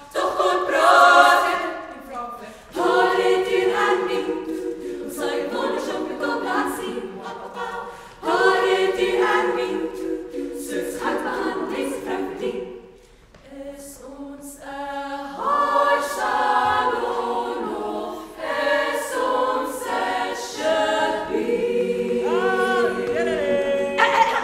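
Women's choir singing in phrases broken by short breaks, with a brief quiet dip about halfway through.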